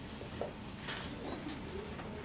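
Dry-erase marker on a whiteboard: a few short scratchy writing strokes, about a second in, over faint classroom room tone.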